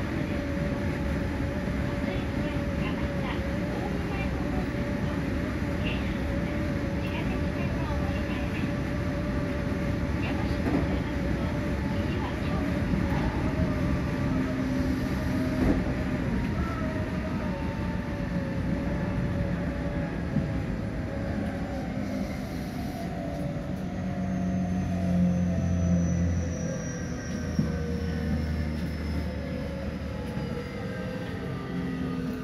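Electric train heard from inside the car: the running rumble of wheels on rail under a steady motor whine, which about two-thirds of the way through begins to fall steadily in pitch as the train slows into a station.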